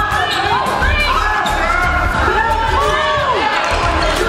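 A basketball being dribbled and bouncing on a hardwood gym floor, with players and coaches calling out over the play.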